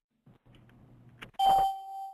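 A single electronic chime, a bright ding with a steady ringing tone that fades within about a second, sounding about one and a half seconds in. A faint low hum and a click come just before it.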